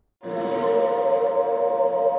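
Opening of a psytrance track: a held electronic chord of several steady tones cuts in suddenly about a quarter second in and sustains without change.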